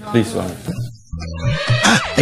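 People talking for about the first second, then a short break and a brief, rough, noisy cry that rises over the last half second.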